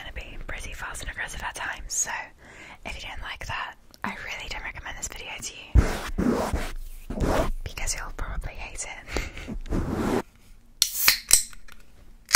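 Hands swirling and pumping over the foam cover of a Blue Yeti microphone: close, muffled rubbing with soft thumps. A few sharp taps come near the end.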